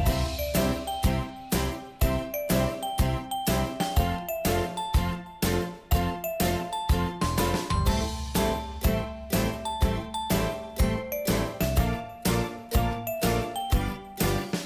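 Background music: a bright, jingly melody of short notes over a bass line with a steady beat.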